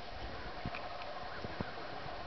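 A horse's hoofbeats on soft arena sand: a few faint, irregular muffled thuds over steady outdoor background noise.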